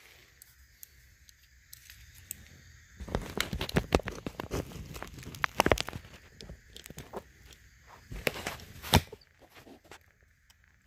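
Handling noise from a phone being carried and set in place on a magnetic mount on a bench vise: rubbing, rustling and knocks against the microphone, densest about three seconds in, and a single sharp click near the end.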